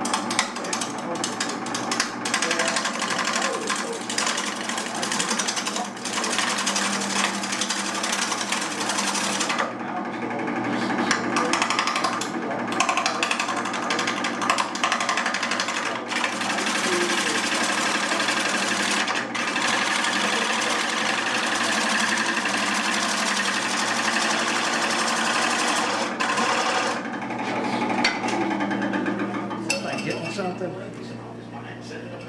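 Wood lathe spinning a workpiece while a turning tool takes a cut across it: a continuous rough rushing and chattering of steel on wood. It lets up briefly about ten seconds in and eases off near the end.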